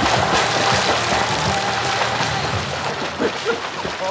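Water splashing from swimmers thrashing across a pool, under background music.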